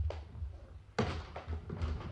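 Radio-drama sound effect: two dull knocks about a second apart, over a low steady hum.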